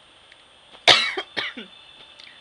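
A woman coughing twice: one sharp cough about a second in and a shorter one half a second later, as she chokes on spit and water.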